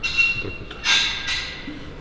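Two metallic clanks of gym weights, each followed by a short ringing tone. The first comes right at the start; the second, louder one comes about a second in.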